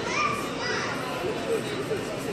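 Children's high voices and background talk in a busy store, with a rising child's call near the start.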